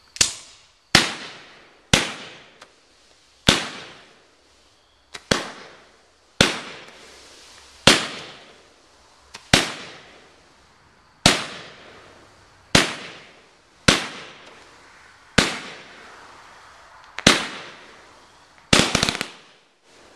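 Red Rhino 'Little Nemo' multi-shot consumer firework firing about fourteen shots, one every second or two. Each shot is a sharp bang followed by a hissing, crackling tail that fades over about a second, with a quick double shot near the end.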